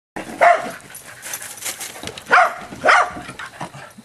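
Corgis barking in play while chasing each other: three short, sharp barks, one near the start and two close together a little past the middle.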